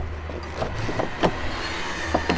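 The tilt-up front seat and engine cover of a Nissan NV350 Caravan being swung down and closed by hand: a few short creaks and knocks over a steady low hum.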